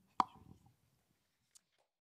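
A single sharp knock from a handheld microphone being handled, with a short ring, followed by faint rustling and a much smaller click about a second later.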